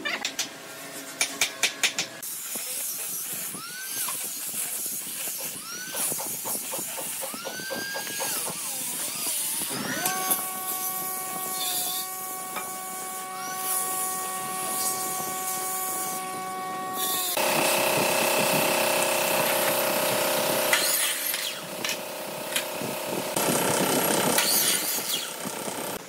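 Handheld angle grinder with a sanding disc sanding the wooden slats of a cradle panel: a motor whine that dips and rises in pitch, then holds steady for several seconds in the middle. A quick run of clicks comes at the start.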